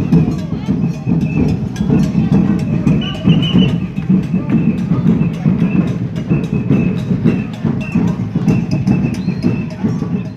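A banda de pífanos, fifes and drums, playing: a thin high fife melody over a quick, steady percussion beat of about four to five strokes a second, with people talking over it.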